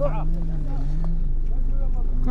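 A vehicle engine runs steadily with a low hum, its pitch dipping slightly about a second in. Brief voices sound over it near the start.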